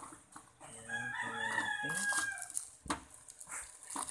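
A long pitched animal call lasting about two seconds begins about a second in, over the rustle of plastic packaging being handled; a single sharp knock comes near the end.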